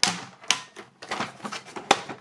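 Hard plastic toy parts clicking and clattering as the blue inner section of the MP-44 Optimus Prime trailer is slid out of the grey trailer shell and its jointed arm is moved. Sharp clicks come at the start, about halfway and just before the end, with a lighter rattle between them.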